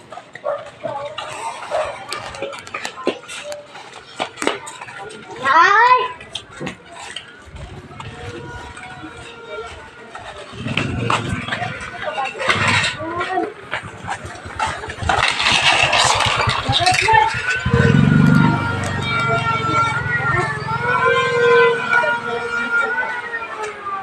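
A motorcycle engine drawing near and passing, growing louder from about ten seconds in, with voices and music in the background.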